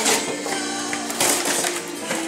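Background music with steady held notes, over cardboard packaging being torn open by hand in two short rips, near the start and just before a second in.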